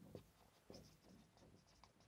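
Near silence with the faint scratch of a marker pen writing on a whiteboard in a few short strokes.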